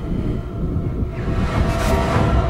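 A low rumble that grows louder, with faint steady tones and a swell of hiss building through the second half: a tense build-up in a thriller film's score and sound design.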